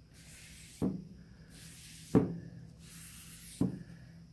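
Polyurethane finish being wiped by hand over a wooden board: soft rubbing with three short knocks about a second and a half apart, the loudest about two seconds in.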